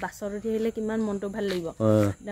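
A woman talking, with a lower man's voice briefly near the end, over a steady high-pitched drone of insects.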